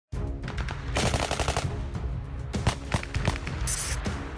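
Machine-gun fire over background music: a rapid burst about a second in, then a few separate shots.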